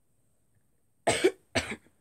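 A young girl coughs twice in quick succession about a second in, the two coughs half a second apart.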